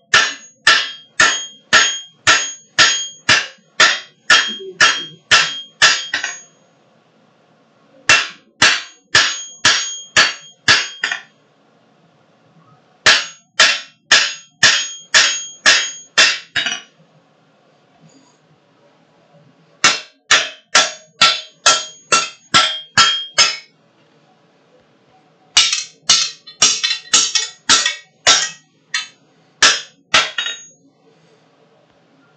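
Blacksmith's hand hammer striking a red-hot steel bar on an anvil in five runs of blows, about two a second, with pauses of a second or two between runs; each blow rings.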